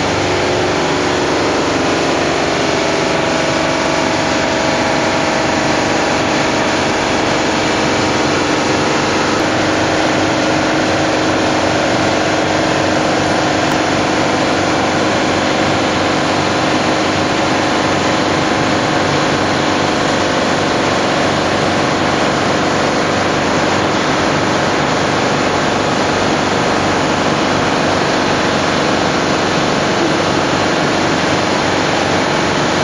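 A foundry's centrifugal casting machine spinning with a steady, loud mechanical drone. A couple of faint steady tones run through it while molten steel is poured from a bottom-pour ladle into the spinning mould.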